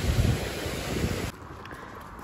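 Water rushing over a small weir, with wind noise on the microphone. It cuts off abruptly after about a second to a much quieter outdoor background.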